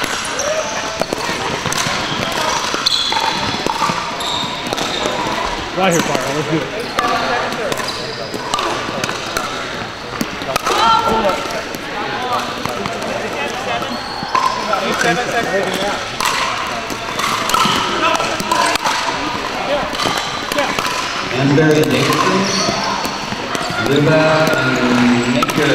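Pickleball paddles popping against the hard plastic ball, with the ball bouncing on the hardwood floor, as sharp knocks at irregular intervals. They come from several courts at once, mixed with players' voices in a reverberant gym.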